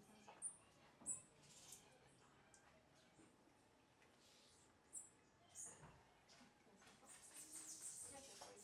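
Faint, very high thin chirps of a rufous-tailed hummingbird: a few single notes spaced apart, then a quick twittering run of them near the end.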